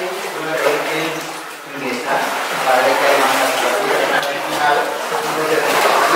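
Indistinct talk from several people, with no clear words.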